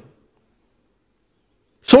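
Near silence: a pause in a man's speech, with his voice resuming abruptly near the end.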